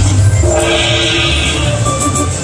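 Panda Magic Dragon Link slot machine playing its bonus-round music, with held electronic tones over a heavy bass, while the win meter counts up.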